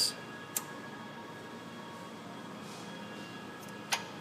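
Faint steady background hiss with one light click about half a second in, as a plastic A/C quick-disconnect tool is set onto a refrigerant line fitting.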